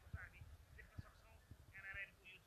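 Faint chatter of a crowd, indistinct voices rising and falling, with a few dull low thuds mixed in.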